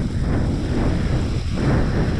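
Steady wind rumbling and buffeting on the microphone, heaviest in the low end.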